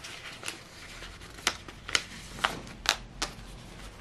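New Zealand polymer banknotes being handled and counted by hand: a series of about six sharp, short snaps and clicks as the notes are flicked apart, over faint room noise.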